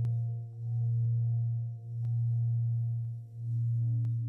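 Background meditation music: a sustained low humming drone with fainter higher tones above it, swelling and fading about every second and a half.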